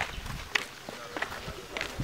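Footsteps on a paved path, about two steps a second.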